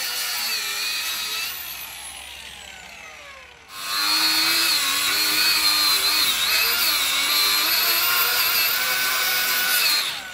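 Angle grinder cutting a transducer fairing block: the disc whines, then is released and winds down with a falling pitch. Just before four seconds in it starts again and cuts steadily, its pitch wavering as the load changes.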